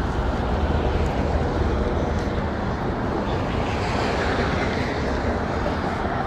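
Steady street traffic noise, a continuous even wash of passing vehicles with no distinct events.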